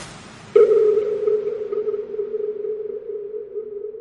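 A single sustained electronic music tone, like a synth note, that starts suddenly about half a second in and fades slowly, after a brief fading hiss.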